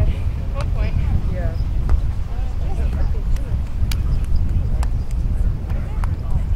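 Wind buffeting the microphone in a steady low rumble, with faint voices in the distance and a few sharp taps.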